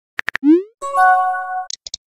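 Texting-app sound effects. Three quick keyboard taps are followed by a short rising bloop as the message sends, then a held chime of several steady tones as a reply comes in, and two faint high ticks near the end.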